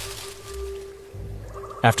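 Background score in a pause of the narration: a steady held tone over a low rumble that swells and fades. A narrator's voice comes back in just before the end.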